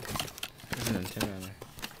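Cardboard packaging being handled: light scraping and small taps as a cardboard box insert is lifted and shifted. A soft mumbled voice comes in around the middle.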